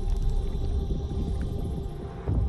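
Cinematic sound design: a deep low rumble with steady humming tones over it, slowly easing off.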